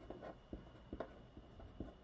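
Pen writing on a paper sheet: faint scratching with a few light ticks as the tip moves across the page.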